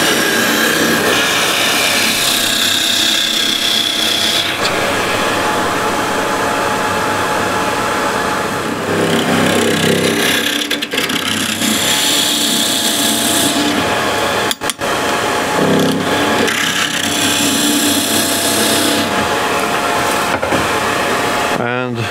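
Spindle gouge boring into the end grain of a spinning wood blank on a lathe: a loud, steady cutting noise over the lathe's hum, with a brief break a little past halfway and stopping just before the end.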